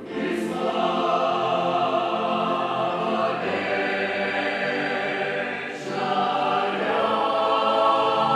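A choir singing sustained sung phrases, with two brief breaks between phrases about three and six seconds in.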